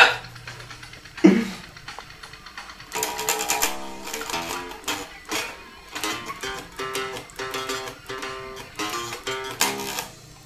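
Electric bass guitar played in a fast run of quick picked notes, starting about three seconds in, after a single sharp thump about a second in.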